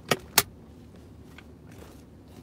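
Two sharp clicks a quarter second apart, then a fainter tick: handling noise from fingers knocking against the phone as it is moved.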